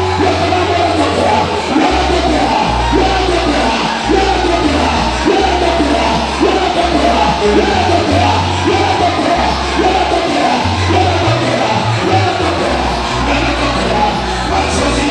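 Loud live church worship music through a PA: a bass line shifting between held notes under singing and calling voices.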